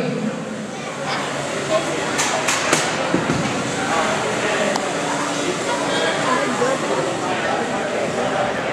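Hits between beetleweight combat robots in the arena, three sharp clanks in quick succession a little over two seconds in, and a weaker one later. Behind them a crowd chatters without stopping in a large hall.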